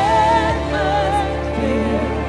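Church worship music: a voice singing long held notes with vibrato over a steady instrumental backing with sustained bass notes.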